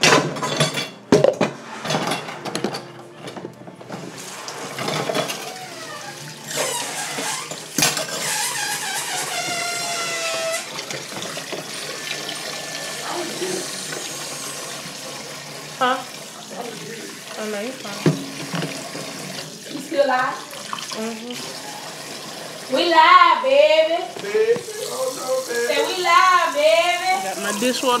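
Kitchen tap running, filling a sink with dish water.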